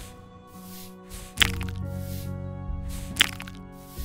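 Two sharp crack-like pops, nearly two seconds apart, each led in by a short hiss: the added sound effect of tweezers plucking hard plugs out of pitted tissue. Soft background music plays under them.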